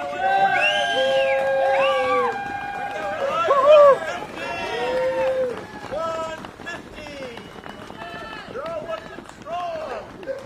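Roadside spectators cheering and calling out to passing runners, several voices overlapping in drawn-out whoops and shouts, loudest about four seconds in. Underneath are the footsteps of many runners on the road.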